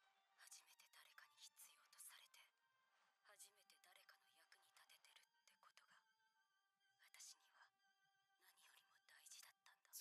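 Very faint dialogue from an anime episode, a single character's monologue, over soft background music with held tones.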